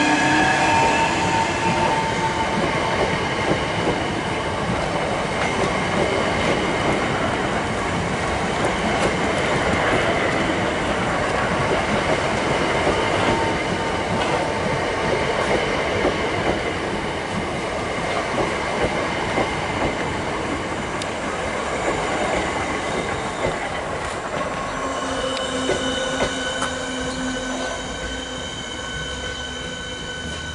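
Electric multiple-unit train running past close by: its motor whine falls in pitch at the start, then a long steady rush of wheels on rail as the carriages pass. Near the end the rush dies away and a steady electric whine from an approaching class 465 Networker takes over.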